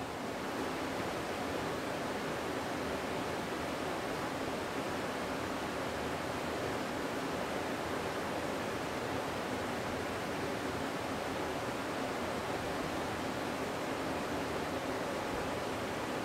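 Sliced onions sizzling steadily in hot oil in a cooking pot.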